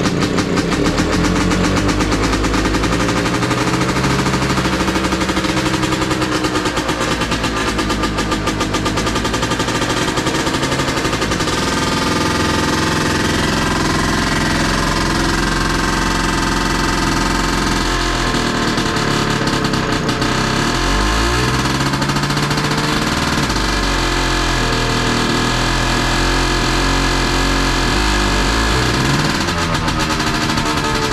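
YuMZ-6L tractor's four-cylinder diesel engine running just after its first start following two years of sitting, with a steady diesel clatter; its speed dips and rises several times in the second half.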